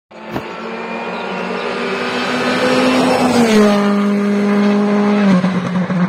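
Citroën C3 Rally2 rally car's turbocharged four-cylinder engine running at high revs and growing louder as it comes closer. Its pitch drops in two steps, once about halfway through and again near the end.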